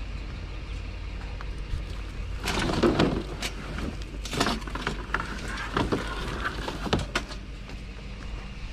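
Clatter and sharp knocks of metal-framed folding lawn chairs being picked up and moved, loudest about three seconds in, with more clanks through the middle of the stretch over a low steady rumble.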